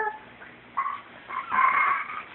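Baby squealing and babbling in short high-pitched bursts, the longest near the end.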